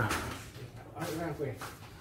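Speech only: a man's voice ending a word, then a short stretch of quieter talk about a second in.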